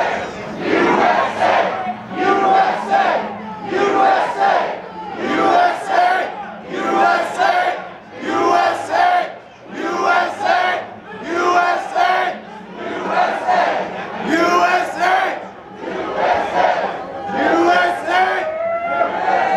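A large crowd of protesters chanting a short slogan in unison, repeated about once a second.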